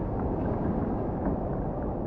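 Sea water lapping and sloshing around a surfboard, with wind rumbling on the camera microphone: a steady low rumble with a few small splashes.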